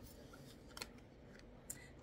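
Near silence, with two faint short ticks about a second apart as cards are handled in the hand.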